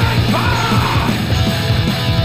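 Thrash metal band playing at full tilt: distorted electric guitars and bass over an electronic drum kit, with shouted, yelled lead vocals.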